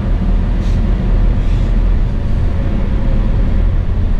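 Steady low rumble of road and engine noise inside the cabin of a moving car.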